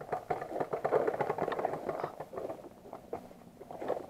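Small dirt bike engine idling with a fast clattering rattle, quieter in the second half.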